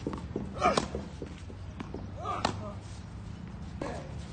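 Tennis ball being struck with a racket and bouncing on a clay court during a rally: sharp pops, the loudest just under a second in, another about two and a half seconds in and a third near the end.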